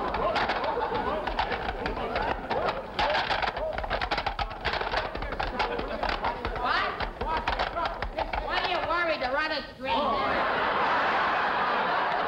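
Studio audience laughing throughout. About nine seconds in, a man's voice wavers up and down, a yelping laugh, before the crowd noise closes in again.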